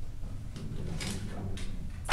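Light handling noises, soft rustles and two brief knocks about a second in and half a second later, over a low steady room hum.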